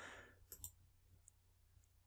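Near silence, with two faint computer mouse clicks about half a second in.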